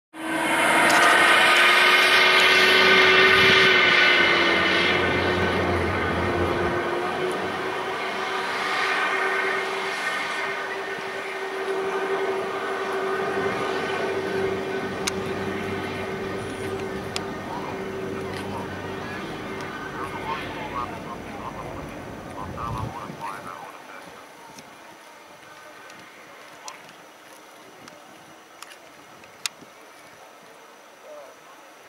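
BAE Hawk jet trainer's Rolls-Royce Turbomeca Adour turbofan running on the ground with a steady whine, loudest at the start. It fades gradually and dies away a little over twenty seconds in.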